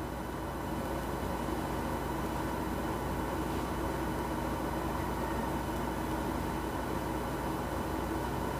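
Steady background hiss with a constant low hum, unchanging throughout, with no distinct events.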